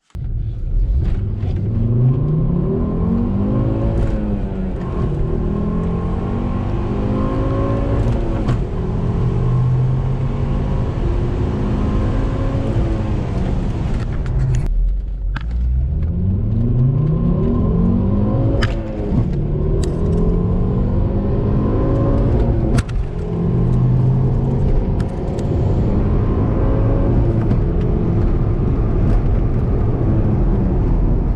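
Volvo S60R's turbocharged five-cylinder, heard from inside the cabin, accelerating hard through the gears of its manual gearbox. The engine note climbs in each gear and drops at each upshift, over two pulls with a brief gap about halfway in.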